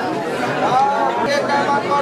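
Several people talking at once: crowd chatter.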